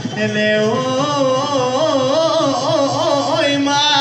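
Live Bihu music played through a PA: a sung melody with held and wavering, ornamented notes over dhol drumming.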